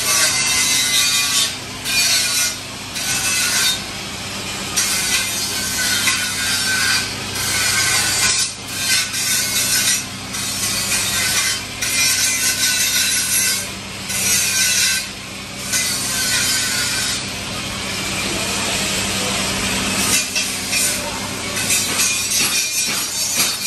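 Repeated rubbing and scraping as a flat tool is stroked over a sticker being pressed onto a painted metal brake caliper. The strokes are mostly a second or two long with short pauses, over a steady low hum.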